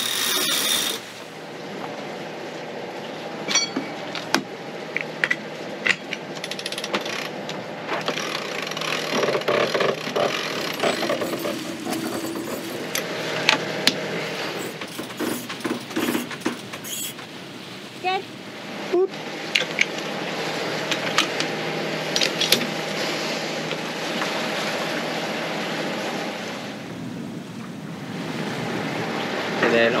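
Sailboat cockpit winches clicking and knocking at scattered moments as lines are hauled and worked, over the steady drone of the boat's engine.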